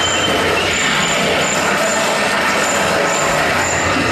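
A dense, steady, noisy sound texture from a live contemporary piece for bass clarinet and accordion, with a faint high chirp recurring about twice a second.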